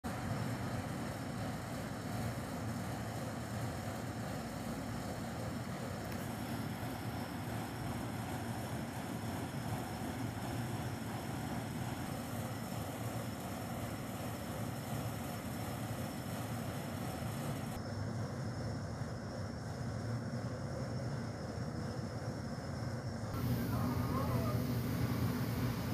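A steady, unbroken low rumble with a hiss over it, unchanging in level and without any rhythm.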